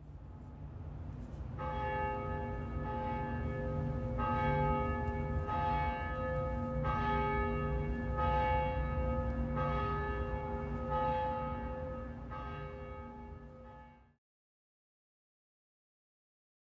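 A large cast bronze church bell, the 1860 Meneely bell tuned close to A-flat, ringing repeatedly. It strikes about ten times, roughly once every second and a half, each stroke ringing on over a low steady rumble. The sound fades in at the start and cuts off sharply near the end.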